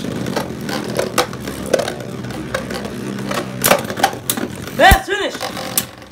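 Two Beyblade Burst spinning tops whirring in a plastic Beystadium, with sharp clacks as they hit each other about four times and a louder knock near the end.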